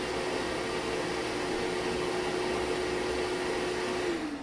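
Six-peak-horsepower shop vacuum for CNC dust collection running on with a steady whoosh and hum after the router has been switched off, kept on for a few seconds by the automatic vacuum switch. At the very end it shuts off, its pitch sliding down as the motor spins down.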